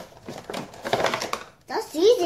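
Clear plastic insert of a Funko Pop box crinkling and rustling as a child pulls it from the cardboard box. A child's voice rises near the end.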